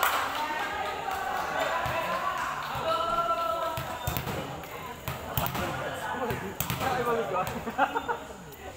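Players' voices calling out across a covered concrete court, with several sharp thumps of a volleyball being struck or bouncing, bunched in the second half.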